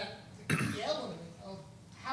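A single cough about half a second in, sudden and the loudest sound, amid a person talking.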